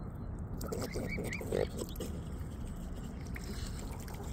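Juvenile swans feeding with their bills in shallow water: a short burst of snuffling, sputtering sounds from about a second in, with a couple of brief rising squeaks.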